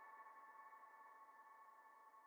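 Faint held chord at the end of the song, made of several steady tones, slowly fading out.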